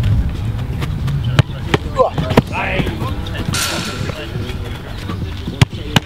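A football being struck and saved in goalkeeper shooting practice: several sharp thumps of ball on boot and gloves, the loudest near the end, with voices in the background.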